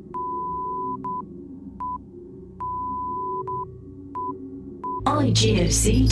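A single-pitch electronic beep keyed in irregular short and long pulses like Morse code, each with a click at its start, over soft background music. About five seconds in, much louder music with a deep bass cuts in.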